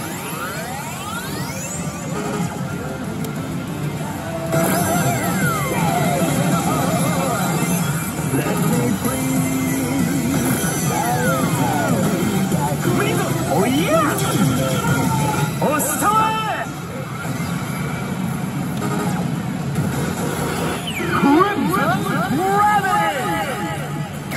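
Pachislot machine (Elite Salaryman Kagami) playing its bonus-stage music with vocal samples and sweeping sound effects while the reels spin.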